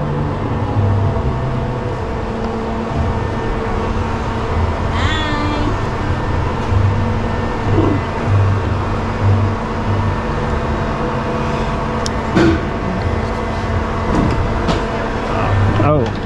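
Spinning glider ride running: a steady low drone with a pulsing low rumble as the gondola swings around.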